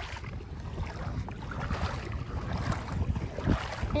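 Water splashing from footsteps wading through shallow water as an inflatable kayak is pulled across a reef flat, with wind rumbling on the microphone.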